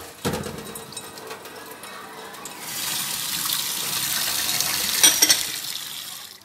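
Water from a kitchen tap running into a stainless-steel sink. The hiss grows louder about halfway through as the stream splashes into a strainer bowl held under it. A few sharp clicks near the end.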